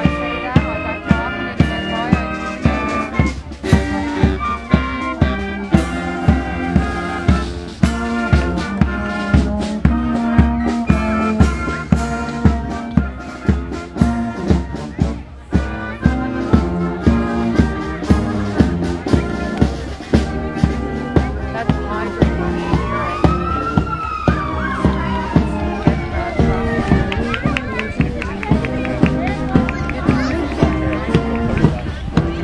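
Marching band playing a brass tune over a steady drum beat. About two-thirds of the way through, a siren-like wail rises and falls once over the music.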